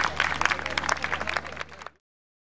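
Audience applauding, the clapping thinning out and fading, then cut off abruptly just before the end.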